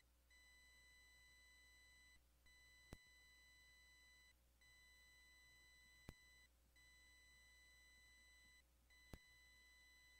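Near silence: a faint electrical hum and a faint high steady tone that breaks off briefly about every two seconds, with three soft clicks about three seconds apart, typical of electronic noise in the recording chain.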